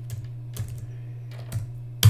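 Computer keyboard being typed on, a few separate key clicks at uneven spacing, over a steady low hum.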